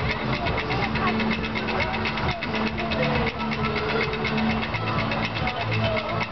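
Roller coaster train being hauled up a chain lift hill: a steady motor hum under a rapid, regular clicking, with people talking in the background.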